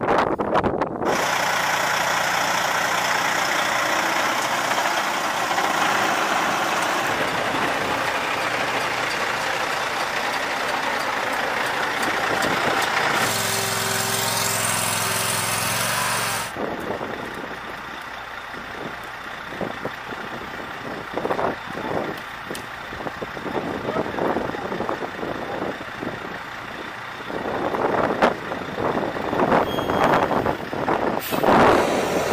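Engine of a Platypus 115 mobile home mover running steadily for about the first half, with a rising whine for its last few seconds before it stops suddenly. After that come quieter scattered knocks and clatter, then a louder stretch near the end.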